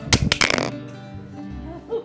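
Acoustic guitar strummed a few times, then the chord left ringing and slowly fading: the closing chord of the song's accompaniment.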